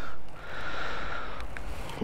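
A person breathing close to the microphone: a short breath, then a longer, steady exhale through the nose.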